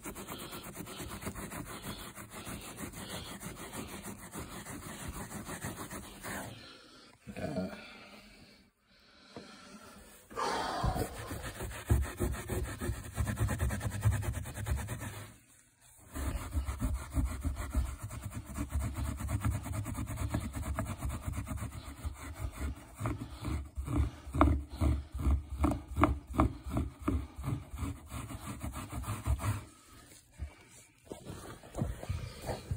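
Gloved hand scrubbing a microfiber rag back and forth over carpet pile, working solvent-softened paint out of the fibers: a steady run of scratchy rubbing strokes that pauses briefly about a quarter of the way in, then comes back heavier, with quick even strokes in the last third.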